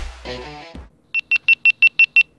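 Rock background music dies away in the first second, then a quick, evenly spaced run of short, high electronic beeps follows, all at one pitch and about six a second.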